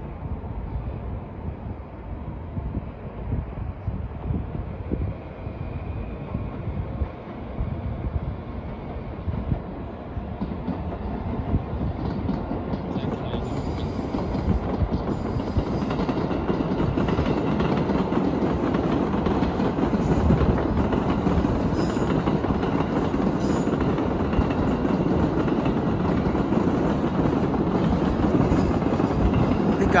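Electric commuter train running along the tracks below. Its steady noise builds from about twelve seconds in and stays loud.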